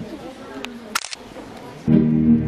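Camera shutter clicking, once and then in a quick cluster about a second in, over low murmuring voices. Music with a bass guitar starts suddenly just before the end.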